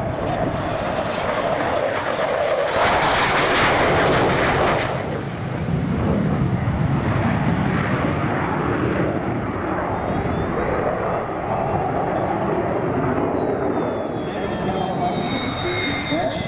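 Jet noise from the MiG-29UB's twin Klimov RD-33 turbofans as it flies a go-around pass. It is loudest and harshest for about two seconds early in the pass, then settles to a steady rumble, with a high turbine whistle that rises and falls later on.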